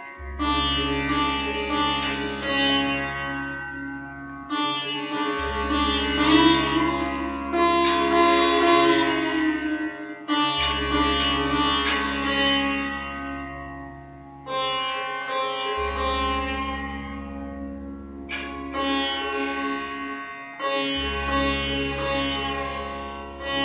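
Sitar played slowly, a new plucked stroke ringing out and fading about every five seconds over a steady drone.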